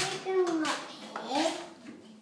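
A young child vocalizing without words: one drawn-out voiced sound that rises and falls in pitch, then a shorter one about a second and a half in.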